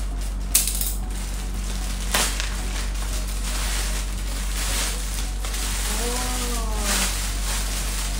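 A black plastic mailer bag being cut and torn open by hand, crinkling and rustling, with two sharp snips of scissors about half a second and two seconds in.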